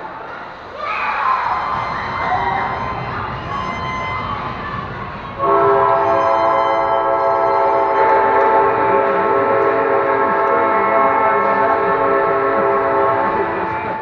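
Ice rink horn sounding one long, steady blast of about eight seconds that starts suddenly about five seconds in. Before it, spectators' voices and shouting.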